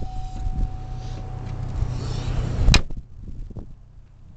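The flip-up rear liftgate glass of a GMC Envoy being swung down and shut: handling noise builds, then one sharp slam a little under three seconds in, followed by a couple of faint clicks.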